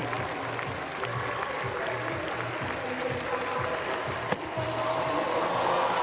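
Stadium crowd noise over a steady, evenly repeating low beat as a long jumper runs up. A single sharp knock comes about four seconds in, and the crowd then swells into cheering.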